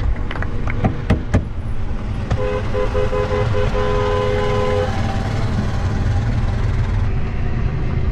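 Car horn held for about two and a half seconds, a couple of seconds in, over the steady road rumble of a moving car heard from inside the cabin. A few sharp knocks come just before it.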